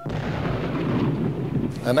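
Twenty cases of dynamite blowing up a beached whale carcass: a sudden blast that carries on as a low rumble for nearly two seconds.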